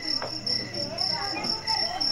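Cricket chirping steadily, an evenly pulsing high-pitched trill that carries on without a break.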